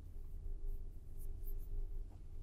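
Steady low hum of a quiet room. A few faint, soft rustles come about a second and a half in.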